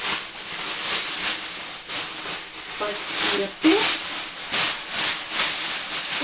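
Large thin plastic tyre-storage bag rustling and crackling as it is unfolded and shaken open.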